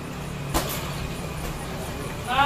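A steady low hum with one short, sharp knock about half a second in.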